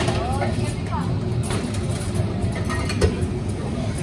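Busy cafe ambience: a steady background of customers' chatter over a low hum, with a knock of cups or equipment about three seconds in.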